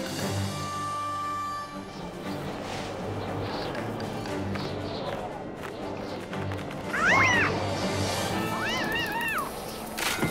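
Cartoon background music, with a small animated pterosaur giving two high, pitched cries, a short one about seven seconds in and a longer wavering one near the end.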